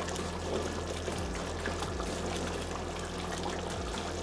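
Sauce boiling in a wok, a steady bubbling hiss, as it is stirred and thickened with cornstarch slurry.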